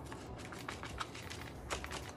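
Faint scattered taps and rustles of fingers pressing a paint-coated plant stem onto a sheet of paper, over a low steady hum.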